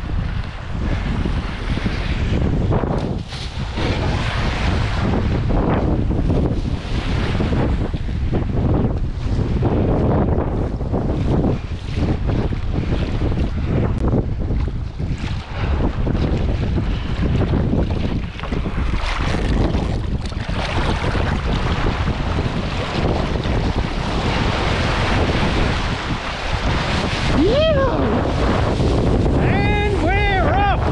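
Wind buffeting the microphone of a body-mounted action camera, with water rushing and splashing as a kiteboard cuts across choppy sea. Near the end there are two short pitched sounds that rise and fall in pitch.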